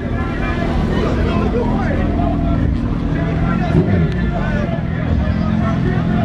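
A vehicle engine idling steadily under the chatter of a crowd.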